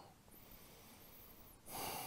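Near silence, then about one and a half seconds in a single long, soft breath.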